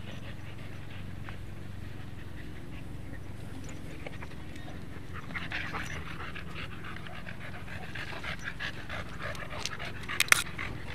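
Dog panting close to the microphone in quick breaths, louder in the second half, over a steady low hum.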